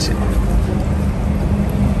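A steady low mechanical hum, as from an engine or machinery running, with a brief short sound right at the start.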